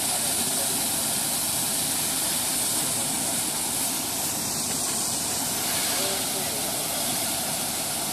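Steady, loud hiss of a fire hose's water jet spraying onto a burnt-out scooter, with steam coming off the doused wreck.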